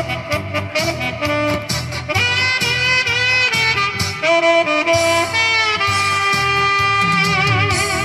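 Saxophone playing a slow melody live over a backing track with a steady beat. The melody has long held notes through the middle and ends on a note sung out with vibrato.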